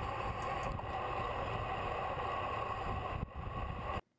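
Steady wind rush over the microphone of a bike-mounted camera on a road bike moving at speed, mixed with road noise. It cuts off abruptly at the end.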